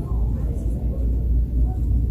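Store ambience: a steady low rumble with faint, indistinct voices in the background.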